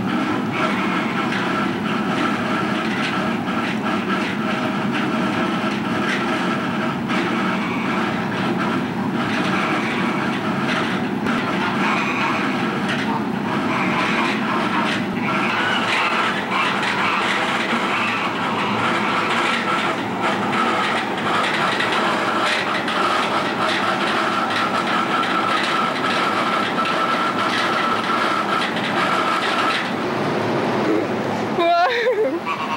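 A steady mechanical drone with a faint held whine, unchanging throughout, with a few soft knocks over it.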